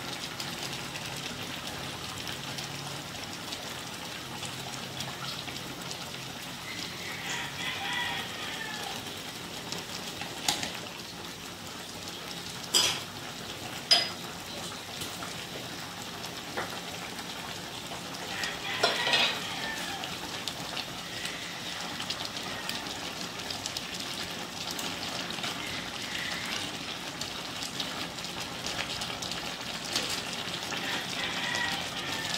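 Pork hocks (adobong pata) frying in a wide aluminium wok as the sauce cooks down, a steady sizzle throughout. A few sharp knocks come in the middle stretch.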